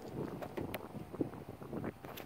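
Wind buffeting the microphone in uneven gusts, with a couple of faint clicks.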